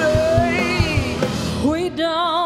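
Live rock band playing, with steady drum hits under the music; near the end a singer slides up into a long held note with vibrato.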